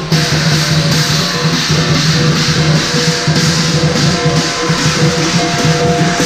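Lion dance percussion: a large lion drum, clashing hand cymbals and a gong, played loudly and without pause as the lion dances.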